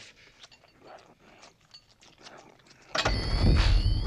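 Faint small clicks, then about three seconds in a sudden loud film sound effect for the ghost's appearance: a deep rumble with several rising whistling tones above it.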